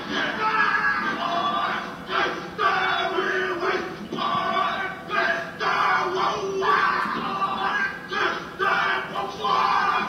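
A group of voices chanting and shouting in rhythmic phrases, each lasting a second or two with short breaks between them.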